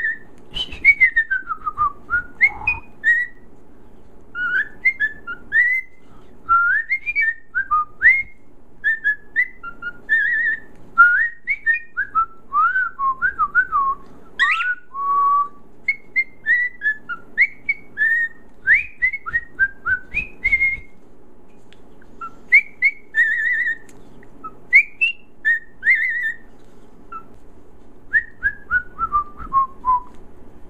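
Cockatiel whistling a long string of short notes, many of them quick upward or downward glides, in phrases with brief pauses between them.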